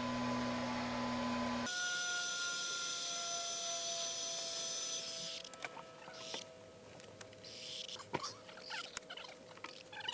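A steady hum with a few held tones that stops about five seconds in, then scattered knocks, clicks and scrapes as a long PVC pipe is worked down through its rubber seal into a plastic drum.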